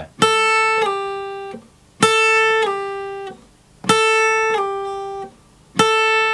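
Acoustic guitar playing a downward legato slide on the high E string: the 5th-fret A is picked, then slid down to the 3rd-fret G without re-picking, the pitch dropping cleanly with no middle note heard. Played three times about two seconds apart, with a fourth starting near the end.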